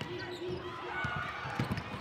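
A basketball being dribbled on a hardwood court, with several short thumps in the second half, under the background voices of an arena crowd.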